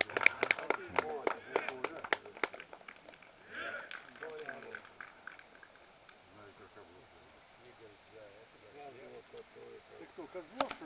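Distant, indistinct voices of people out on an open field, with no clear words. A rapid run of sharp clicks and crackles fills the first couple of seconds, then stops.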